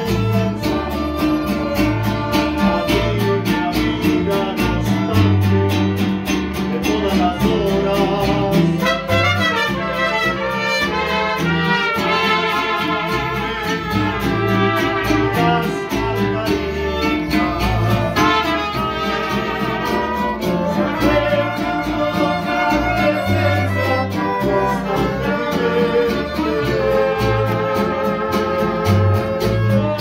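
Mariachi band playing live: guitars and a guitarrón strumming a steady rhythm under a melody.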